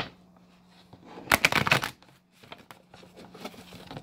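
A deck of Romance Angels oracle cards being shuffled by hand: a sharp tap at the start, a quick burst of card flicks about a second and a half in, then soft scattered card sounds.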